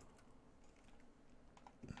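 Near silence with a few faint clicks from a computer keyboard and mouse, the clearest near the end.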